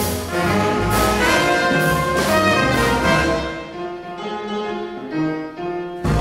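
Live jazz band with a horn section of saxophone, trumpet and trombone over piano, upright bass and drums, playing hard-bop. The full ensemble plays for the first few seconds, then thins out and gets quieter, with the cymbals dropping away, before the band comes back in at the end.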